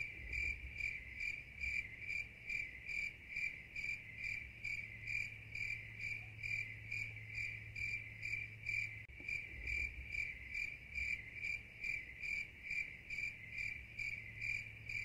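Crickets chirping: one high-pitched chirp repeated in a steady, even rhythm, about two to three chirps a second.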